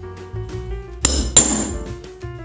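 Hammer striking a metal hole punch through a sandal insole, twice, about a third of a second apart, each blow with a short high metallic ring.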